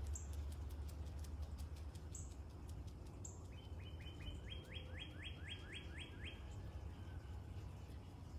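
A bird calling: a quick series of about a dozen short falling notes, roughly four a second, starting about three and a half seconds in and stopping a little after six seconds, heard faintly over a low steady rumble.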